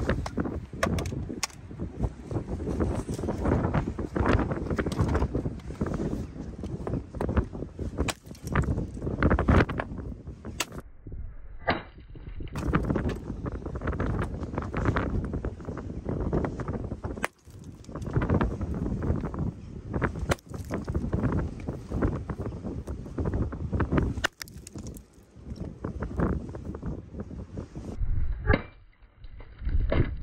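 Repeated blows of a large hammer on a rock nodule as it is struck to crack it open; sharp knocks come at irregular intervals throughout.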